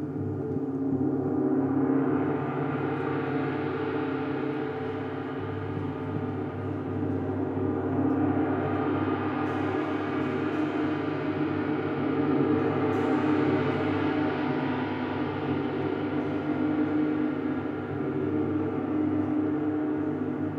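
Large gongs played continuously with mallets, a sustained wash of many overlapping ringing tones that swells about two seconds in and again from about eight seconds on.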